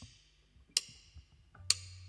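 Drummer's count-in: two sharp wooden clicks about a second apart, like drumsticks struck together, with a low steady hum coming in near the end just before the band starts.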